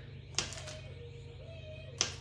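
A knife cutting a stick of butter on its paper wrapper, the blade clicking sharply against the stone countertop about half a second in and again at the end, over a steady low hum.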